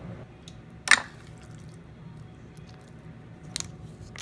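Handling noises around a wooden bowl of chia pudding: a sharp click about a second in and a fainter click near the end, with a few light ticks between, over a low steady hum.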